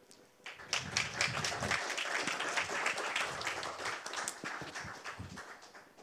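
Small audience applauding, starting about half a second in and dying away near the end.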